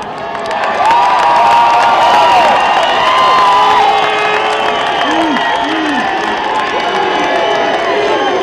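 A large crowd cheering and shouting, many voices held in long shouts and whoops. It swells about a second in and stays loud.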